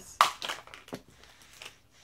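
A sharp knock about a quarter second in, followed by a few fainter plastic clicks and rustles from a small clear plastic pacifier case being handled.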